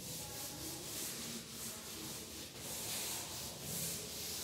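A chalkboard duster wiping chalk off a board, a dry scrubbing hiss in quick back-and-forth strokes, about three a second.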